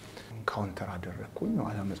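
A man speaking softly, in short phrases with small pauses.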